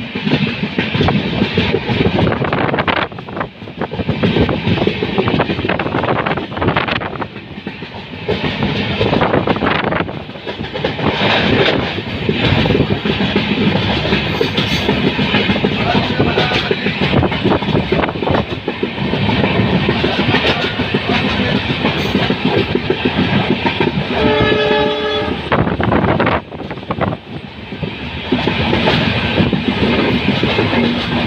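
Diesel-hauled express train running at speed, heard from an open coach door: steady rush of wheels and wind with frequent sharp wheel knocks. Late on, the WDP4D diesel locomotive's horn sounds once for about a second and a half.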